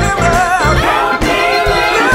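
Gospel choir singing with piano, organ and drum accompaniment, several voices sliding between notes together.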